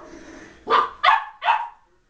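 A puppy barking three times in quick succession, short barks about half a second apart.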